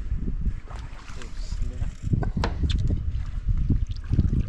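Wind buffeting the microphone and water noise on an open boat, mostly low-pitched and uneven, with a few sharp clicks a little over two seconds in.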